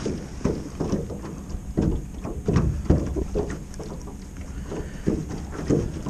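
Small waves slapping against the side of a jon boat, a string of irregular low knocks.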